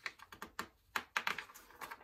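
A quick, irregular run of light clicks and paper rustles as fingers handle a sheet of drawing paper, working it loose from the paper beneath.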